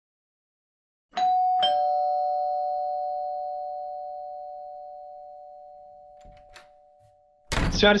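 A two-note doorbell-style chime: a high note about a second in, then a lower one half a second later, both ringing on and slowly fading away over about six seconds. Speech begins just before the end.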